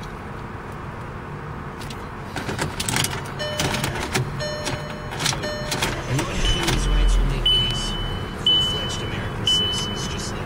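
Car key fob clicking into the dashboard ignition slot while short electronic chimes sound. The engine then cranks and catches with a low rumble about six and a half seconds in, and a high warning chime starts beeping about once a second.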